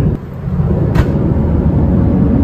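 Steady low rumble of an Airbus A350's cabin noise in flight, heard inside the aircraft lavatory. It dips briefly near the start, and there is a single sharp click about a second in.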